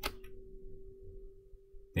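A single keyboard key click, then a faint steady electrical hum in the recording's background.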